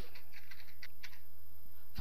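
Typing on a computer keyboard: a run of faint keystrokes as a line of C code is entered, over a steady low hum.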